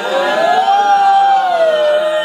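A man singing unaccompanied, holding one long, loud note that rises, holds and then sinks away near the end.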